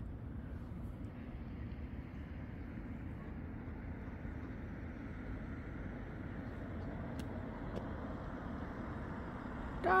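Steady hum of road traffic, growing slightly louder in the second half as a car approaches.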